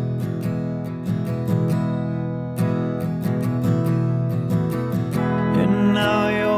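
Instrumental passage of a song: an acoustic guitar strummed in a steady rhythm over sustained chords, with no singing.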